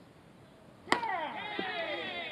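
A baseball bat hitting a pitched ball: one sharp crack about a second in, followed at once by voices shouting.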